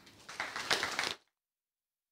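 Audience applauding, cut off suddenly just over a second in.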